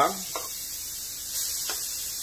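Chicken thigh pieces sizzling in a hot pan as they are turned over, a steady hiss that grows a little louder about one and a half seconds in, with a couple of light clicks.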